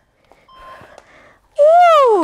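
A woman's loud whooping cry about one and a half seconds in, rising slightly and then sliding down in pitch; before it, only faint background sound.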